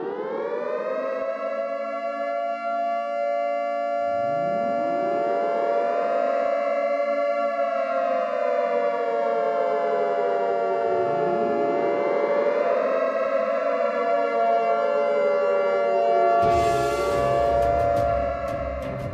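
Civil-defense air-raid siren sound effect wailing, its pitch rising quickly and sinking slowly, winding up again three times over a steady held tone. Near the end a rush of hiss and a beating music intro come in.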